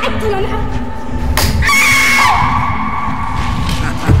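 A single pistol shot, then a woman's high scream held for nearly two seconds, dropping to a lower pitch partway through. Music plays underneath.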